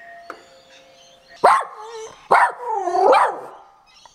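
A doorbell chimes two tones, setting off a Havanese dog, which barks three times; the last bark is longer, with a wavering pitch.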